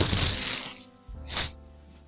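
Plastic mailing bag crinkling loudly for most of the first second as it is handled, then one more short crinkle about halfway through. Soft background music plays underneath.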